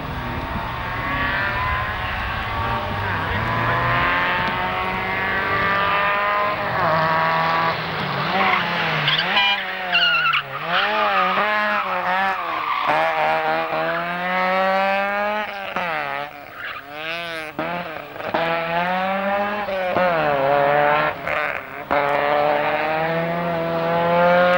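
Group N Vauxhall Astra GSi rally car's four-cylinder engine revving hard through the gears, its pitch climbing and dropping with each shift and swinging rapidly up and down through the corners, with a brief tyre squeal about ten seconds in.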